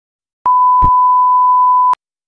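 An added sound-effect beep: one steady pure tone, like a censor bleep, starting about half a second in and lasting about a second and a half, with a short thump partway through.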